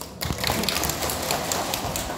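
Audience applause, starting quickly just after the beginning and going on as a dense crackle of many hand claps.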